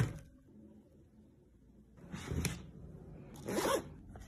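A sharp knock at the start, then a zipper pulled in two short strokes, about a second and a half apart.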